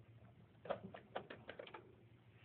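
A quick run of light clicks and taps, about ten in a second, as a hard plastic pet exercise ball is handled.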